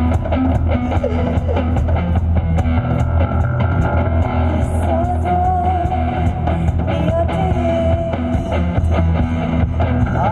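Live band music with a steady drum kit, a strong bass and guitar. A woman's voice holds a long, wavering note through the middle.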